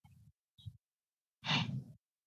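A person's short breathy exhale into a microphone, about one and a half seconds in, over faint room noise that cuts in and out.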